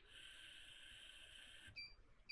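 Near silence: a faint steady high-pitched whine that cuts off shortly before the end, followed by a brief faint beep.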